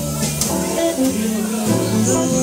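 Live small jazz band playing: a woman singing over double bass, piano, saxophone and drum kit with cymbals.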